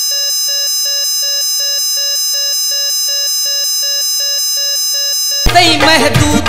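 An electronic alarm-like beeping: steady high tones with a beep pulsing about three times a second, at an even level. It stops abruptly about five and a half seconds in, when music cuts back in.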